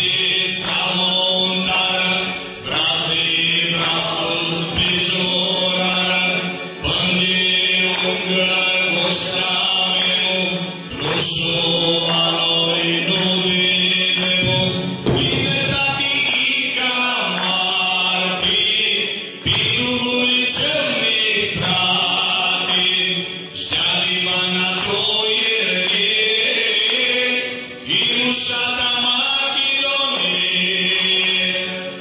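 Aromanian folk song performed with singing over instrumental accompaniment, with a steady low note under the melody. The song runs in phrases of about four seconds, with brief dips between them.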